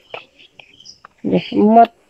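Speech only: a short spoken utterance a little past halfway, after a quiet moment.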